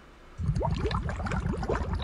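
Bubbling, gurgling water sound: a quick, irregular run of bubble pops that starts about half a second in, used as a transition effect between the quiz's questions.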